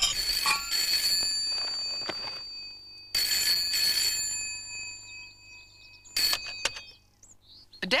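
Desk telephone ringing: two long rings, then a third cut short as the handset is picked up.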